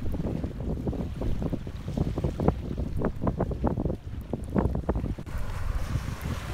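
Wind buffeting the microphone: a loud, irregular low rumble that swells and spikes in gusts.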